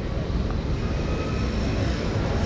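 Steady low rumble of city street traffic, with no single event standing out.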